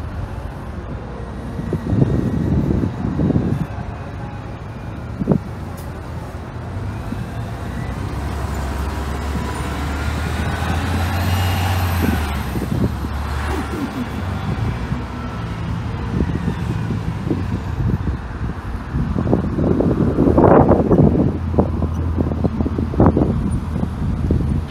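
Street traffic at a city intersection: a vehicle passes close by in the middle, its low engine rumble swelling with a whine that rises and falls, then more traffic noise swells louder near the end.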